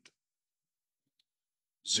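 Near silence in a pause between a man's spoken phrases. The speech cuts off at the start and picks up again near the end.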